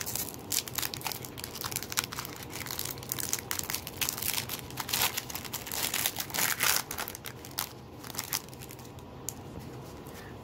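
Foil trading-card pack (a 1996 Signature Rookies Premier wax pack) being torn open and crinkled by hand: a dense run of sharp crackles and tearing that thins out in the last couple of seconds as the cards come out.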